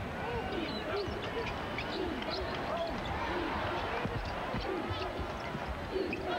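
A basketball dribbled on a hardwood court in a packed arena, under the steady chatter of many crowd voices.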